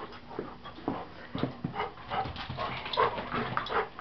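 A Labrador retriever panting in quick, short breaths, with a brief whine about a second and a half in.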